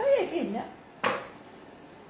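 A kitchen knife knocks once on a wooden cutting board about a second in, as raw meat is cut on it. Just before the knock there is a short vocal sound.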